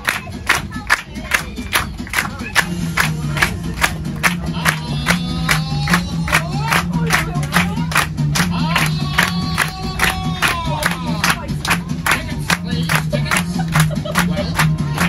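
A group of people clapping in time to upbeat music, about three claps a second, steady throughout.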